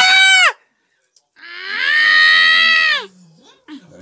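Injured person screaming in pain while a leg wound from a motorcycle accident is cleaned: a cry that falls away about half a second in, then a long high wordless scream held for nearly two seconds.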